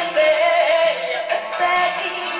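A woman singing long held notes in a pop ballad over band accompaniment.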